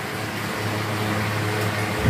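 Several electric desk and pedestal fans running together: a steady whir of moving air over a low, even electric-motor hum.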